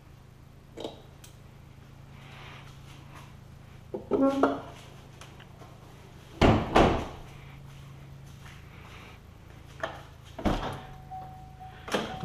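A Corvette's clamshell hood being shut with a loud double thunk about six and a half seconds in, after lighter knocks; near the end the car's door is opened and a steady electronic tone starts.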